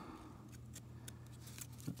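Quiet handling of an opened baseball card pack: faint rustles and a few light clicks from the pack wrapper and the stack of cards, with a sharper tick near the end, over a low steady hum.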